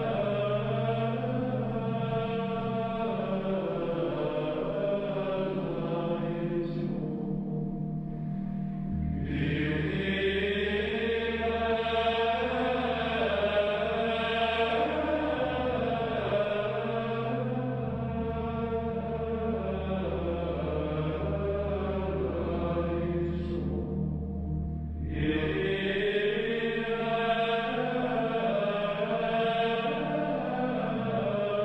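Sacred chant: voices singing slow, drawn-out melodic lines over a held low drone note that shifts pitch now and then. Twice the upper voices drop away briefly, leaving mainly the low drone.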